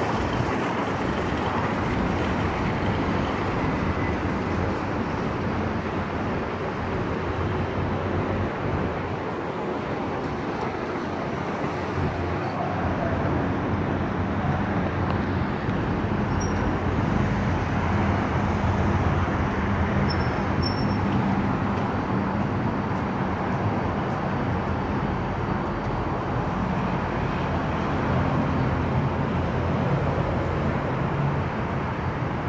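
Steady street traffic noise: cars passing on a city road with a continuous low rumble.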